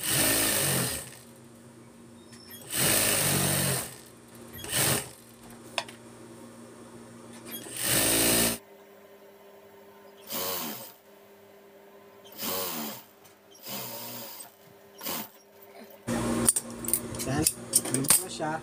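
Juki industrial sewing machine stitching bias tape in short runs of about a second each. It starts and stops some eight times, with the motor humming steadily between runs.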